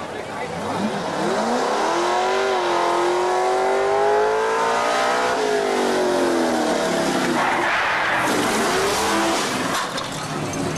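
Racing rig's engine revving hard as it launches: the pitch climbs over about two seconds, holds high for about three, then falls away as the rig runs off. Near the end a loud rushing hiss takes over.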